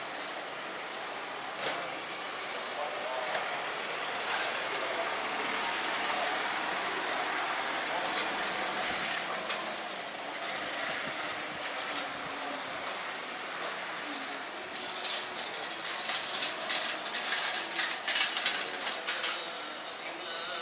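Street ambience heard on foot in a narrow cobbled street: passers-by talking and a vehicle nearby, with a few single knocks. A quick, irregular run of rattling clatter fills the last few seconds.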